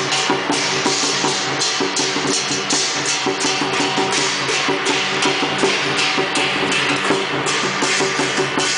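Lion dance percussion: a large Chinese lion drum beaten in a driving rhythm, with cymbals crashing about twice a second.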